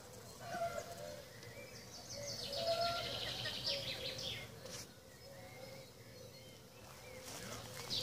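Songbirds singing in woodland trees, with a fast run of high chirps in the middle, over a faint steady background.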